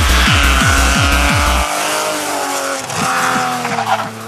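Electronic dance music with a fast kick-drum beat cuts out under two seconds in. It leaves a BMW E30 rally car's engine revving hard, its pitch rising and falling.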